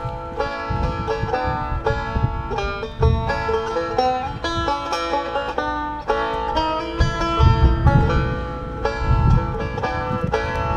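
Deering Boston five-string banjo picked in a quick, continuous stream of bright notes, with no singing. A low rumble sits underneath.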